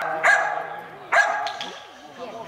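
Dog barking twice, about a second apart, each bark echoing in a large indoor hall.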